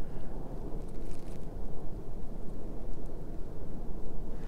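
Wind buffeting the microphone: an uneven, low rumble.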